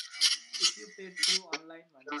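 A voice talking over a video call, broken by several short, sharp bursts of noise.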